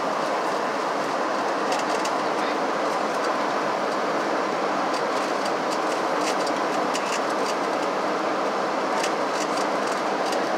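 Steady, even rushing noise inside the cabin of a Boeing 737-700 on descent: airflow along the fuselage mixed with the hum of its CFM56-7B turbofan engines. A few faint light ticks sit on top of it.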